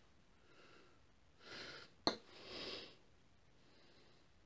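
Faint breathing through the nose, with two louder breaths about halfway through, each about half a second long. A single sharp click falls between them.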